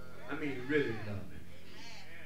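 A man's voice in drawn-out, wavering phrases: a longer one starting about a third of a second in, and a short one near the end.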